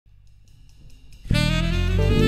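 Band music beginning: a few faint ticks, then a little past halfway a horn section comes in loudly over drums and bass.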